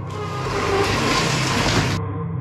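A loud, even rushing hiss, like static or a whoosh, over a low droning background of ambient music; the hiss stops suddenly at the end.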